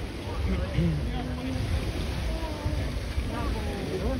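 Wind buffeting the microphone with a steady low rumble, under scattered faint chatter from a crowd.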